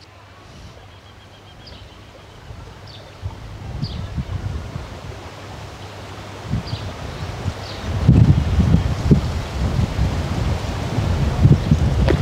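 Wind gusting across the microphone, a low buffeting rumble that builds from about three seconds in and is strongest in the second half.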